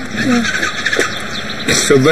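Brief snatches of speech over a steady background hiss.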